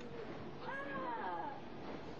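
People's voices crying out in alarm: a couple of drawn-out, wavering wails that rise and fall in pitch, over a steady rushing noise.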